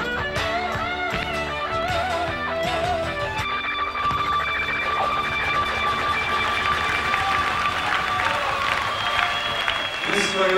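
Rock band music led by guitar: a wavering melody line for the first few seconds, then one long held high note.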